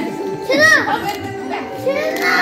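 Two high-pitched, excited vocal cries, short squeals that rise and fall, about half a second in and again near the end, over steady background music.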